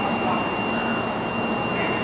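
Steady background noise of a large airport terminal hall, with a continuous high-pitched electronic tone held throughout.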